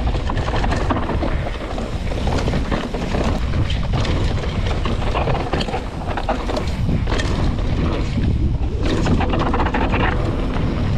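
Wind buffeting the microphone of an action camera on a mountain bike descending a dirt trail, over a steady low rumble of knobby tyres on the ground and rattling knocks from the bike over bumps.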